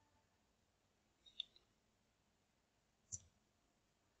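Near silence broken by two short clicks, one about a second and a half in and one near the end.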